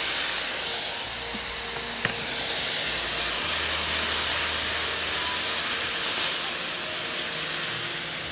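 Frying pan of hot oil tempering with dals and curry leaves sizzling hard with a steady hiss of steam as liquid is poured in and stirred. A light click about two seconds in.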